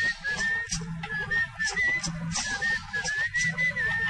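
Instrumental interlude of an old Tamil film song: a flute playing a high, ornamented, wavering melody over a light, steady percussion beat.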